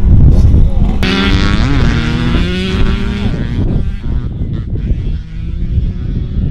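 Wind buffeting the microphone with a heavy low rumble, and a man's voice making sounds without clear words in the first half.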